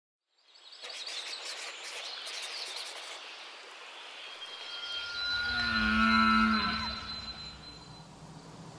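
A cow moos once, a long call lasting about two seconds that drops in pitch as it ends, peaking about six seconds in. Before it, soft outdoor ambience with small bird chirps.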